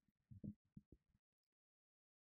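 Near silence: a few faint, short low thumps in the first second, then dead silence.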